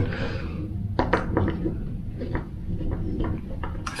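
Hand screwdriver driving a screw into a pre-drilled wooden batten, with scattered sharp clicks and creaks as the screw turns.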